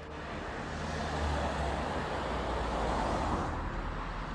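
A road vehicle driving past, its tyre and engine noise swelling to a peak around the middle and fading near the end.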